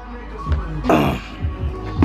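Background music with a steady low bass line, and a short noisy burst about a second in.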